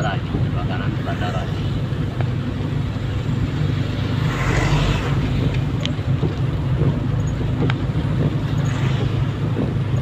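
Steady low drone of a vehicle's engine and tyres on a wet road, heard from inside the cabin, with a louder rushing swell about four to five seconds in and a few sharp ticks near the end.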